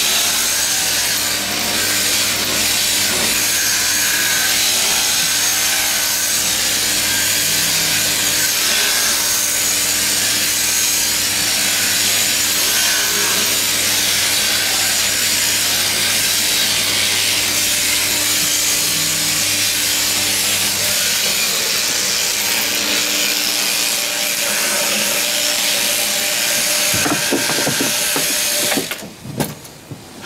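Electric sheep-shearing handpiece on an overhead drive running as it shears a sheep: a loud, steady buzzing hiss of comb and cutter through the fleece over a low drive hum. The hum drops out about two-thirds of the way through, and the shearing noise stops a second before the end with a few knocks. The handpiece carries an old dagging comb with the tension screwed right down, which the shearer says was chafing a bit.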